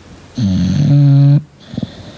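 English bulldog snoring while dozing: one loud, low snore about half a second in, lasting about a second and cutting off sharply, then a short softer one near the end.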